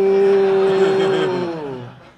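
A man's long, drawn-out "Ohhh" held on one steady pitch, then sliding down and fading out near the end.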